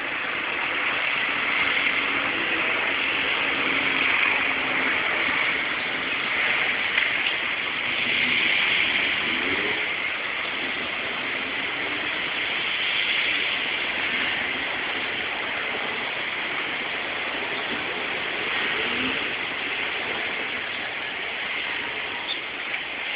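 City street ambience: a steady wash of traffic noise from passing cars, with no single event standing out.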